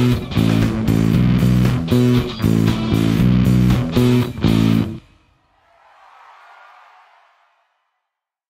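Rock band track with a Music Man StingRay electric bass playing along, a choppy line of short repeated notes that stops dead about five seconds in. A faint hiss then swells and fades away.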